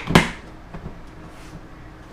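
Lid of a large plastic storage tote pressed down onto the tote: one sharp plastic knock just after the start, then a couple of faint ticks.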